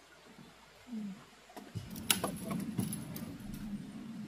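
Light metallic clinking and clatter of camping gear being handled, with a few sharp clicks in the second half.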